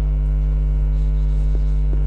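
Steady electrical mains hum: a low, unchanging drone with a stack of higher overtones, with a couple of faint ticks near the end.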